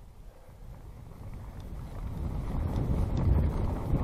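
Mountain bike rolling down a dirt trail: tyres on packed dirt and dry leaves, with small clicks and rattles from the bike, and wind on the microphone. The rumble grows steadily louder over the second half as the bike picks up speed.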